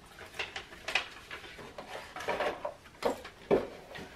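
Paper and cardboard rustling and crinkling in several short bursts as a gift package is opened and handled by hand.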